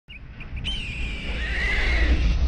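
A horse whinny sound effect: a high, wavering cry that starts suddenly about half a second in and falls in pitch, over a deep low rumble of an intro soundtrack.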